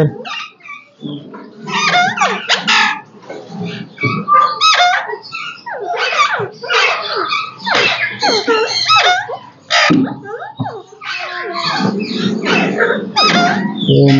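Aviary parakeets calling: short calls that rise and fall in pitch, following one another closely, with a brief lull around ten seconds in.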